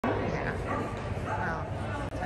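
Busy indoor hall: spectators chattering, with dogs barking and yipping among them, over a steady low hum.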